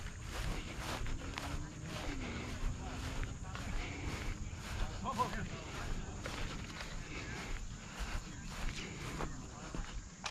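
Footsteps of a person walking at a steady pace across grass and onto asphalt, with faint voices in the background.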